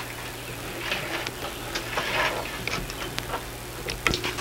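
Scattered light clicks and taps of a wire fish basket and wet bass being handled and laid on a wooden table, over a steady low hum.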